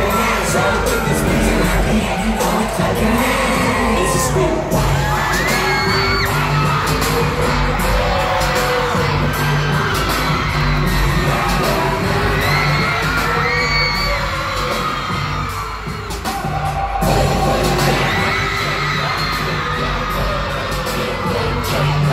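A K-pop dance track played loud over an arena sound system, with a heavy bass beat and voices over it, and the audience cheering in the room.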